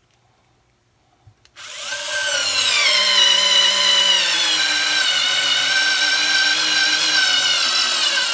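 WORX WX240 4V cordless screwdriver's motor whining as it drives a 2-inch screw into wood with no pilot hole. It starts about a second and a half in, after a couple of faint clicks. Its pitch drops as the screw bites, then holds steady.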